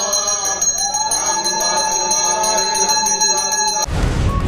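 Temple bell rung rapidly and without pause, its ringing tones steady, with voices chanting over it. Near the end it cuts off suddenly into a burst of music.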